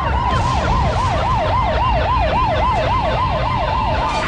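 Emergency-vehicle siren on a fast yelp, its pitch going up and down about three to four times a second, over a low rumble.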